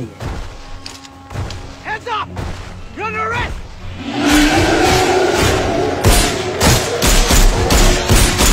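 Film soundtrack: two short shouts, then from about four seconds in a loud stretch of music and impacts, with pistol shots in quick succession near the end.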